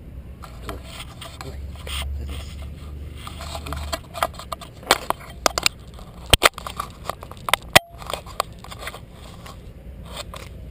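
Handling noise on a small action camera being fixed onto a dog's back: rubbing and scraping against the camera, with a run of sharp clicks and knocks in the middle, the loudest two close together about six and a half and eight seconds in.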